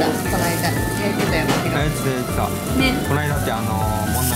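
Thick cuts of beef sizzling on a gas-fired yakiniku grill, heard under background music and conversation.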